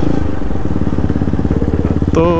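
KTM Duke 200's single-cylinder engine running at a steady speed while riding, with no revving or change in pitch.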